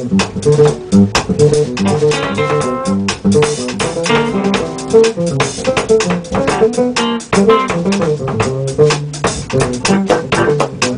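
Jazz band playing a free-jazz groove: electric bass and electric guitar repeat a short riff over and over while a drum kit keeps time with cymbal strokes.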